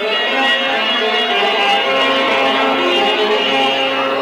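Bağlama (saz) playing an instrumental folk passage, a run of plucked notes that change steadily in pitch.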